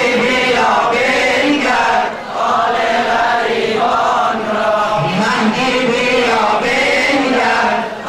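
A man chants a Shia Muharram lament (noha) into a microphone, sung in long phrases with short breaks between them, and other male voices join the chant.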